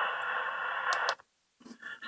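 Steady hiss from the President Washington transceiver's speaker, which cuts off after about a second. Near the end, its pre-recorded CQ voice message starts playing back through the speaker.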